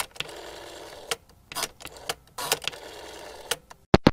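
Logo sound effect: a run of sharp mechanical clicks and clacks, irregularly spaced, over a steady hiss, closing with two hard knocks near the end.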